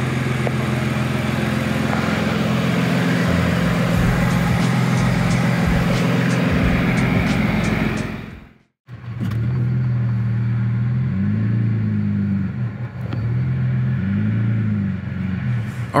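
Audi B5 S4's 2.7-litre twin-turbo V6 idling on its first run after reassembly, warming up. The sound cuts out briefly just before halfway, then the idle returns with the engine note rising and falling gently twice.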